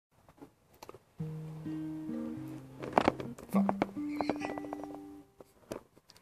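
Acoustic guitar played with a few soft clicks at first, then chords strummed and left to ring from just over a second in, changing chord several times with the strongest strums about halfway through, and fading out near the end.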